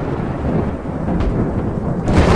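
Heavy storm: wind and rain in a loud, dense rush with a deep rumble underneath; the higher hiss thins out about a second in.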